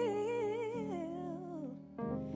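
A female soul singer's wordless vocal run, a hummed melody with vibrato stepping down in pitch over sustained backing chords; the voice trails off near the end.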